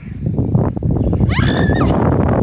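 A person's high-pitched yell, rising in pitch, held briefly and then dropping, a little past the middle, over a loud, steady rushing noise.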